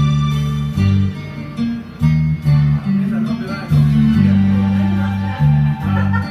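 Enka karaoke backing track playing an instrumental passage over a PA, with a bass line stepping between sustained low notes, shortly before the vocal line comes in.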